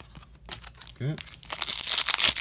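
Foil wrapper of an SP Authentic hockey card pack being torn open and crinkled by hand: rapid crackling that starts about halfway through and grows louder and denser toward the end.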